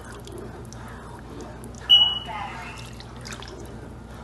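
A long utensil stirring thin tomato-and-broth stew in a large pot, the liquid sloshing, with one sharp ringing clink about two seconds in as the utensil strikes the pot.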